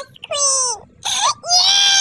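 A pug giving a string of high, drawn-out wailing cries, about three in two seconds with short breaks between, some sliding down in pitch at the end.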